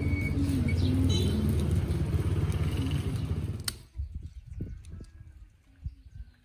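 A motor vehicle engine running close by with a steady low rumble. It cuts off abruptly about four seconds in, leaving a much quieter outdoor background with a few soft low thumps.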